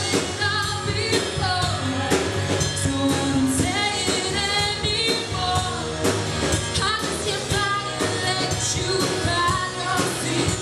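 A live rock band playing: a woman sings the lead melody into a microphone, with held and gliding notes, over a drum kit and guitar.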